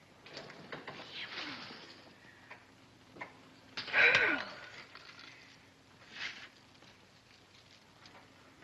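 A young woman's breathy gasp or sigh of delight, falling in pitch, loudest about four seconds in, over soft rustling and small clicks of jewellery being handled.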